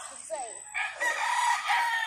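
A rooster crowing: one long, steady held call in the second half.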